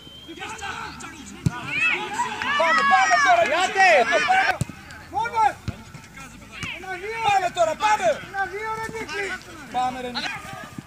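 Men's voices shouting across a football pitch during play, loudest from about two to four and a half seconds in. Two sharp knocks cut through the shouting.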